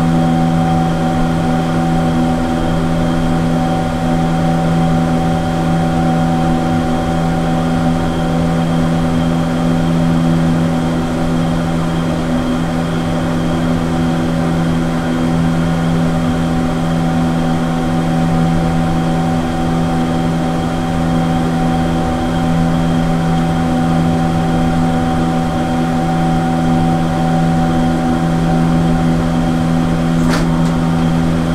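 1957 Schlieren single-speed traction elevator car travelling in its shaft: a loud, steady hum with several held tones that does not change throughout.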